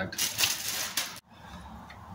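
Clear plastic bag crinkling as the telescope mount head inside it is handled. It stops abruptly a little over a second in, leaving quiet room tone.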